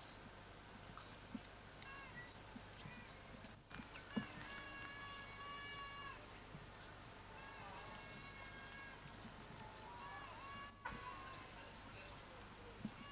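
Faint, drawn-out vocal calls: a few long held notes of about a second and a half each, around the middle and again near the end, over steady tape hiss and a low hum.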